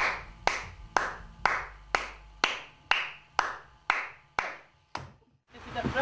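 Slow, steady hand claps, about two a second, roughly ten in all, with a short echo after each; they stop about five seconds in. Near the end a low outdoor rumble of wind or traffic comes in.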